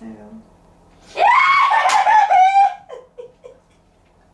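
A person's loud, high-pitched shriek, starting about a second in and lasting about a second and a half, breaking into laughter, then a few short laughs.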